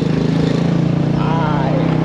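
Small motorcycle engine running steadily at cruising speed, with wind rush over it.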